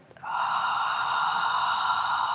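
A woman's long, audible exhale through the mouth, steady for nearly three seconds: a diaphragmatic breath out as the belly is drawn in.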